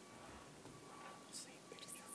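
Near silence: room tone, with faint whispering near the end.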